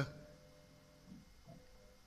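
Faint, steady hum from the WM18 mill's stepper motors and drives as the X axis travels slowly toward its home sensor at about 900 mm/min, with two soft low thumps in the second half.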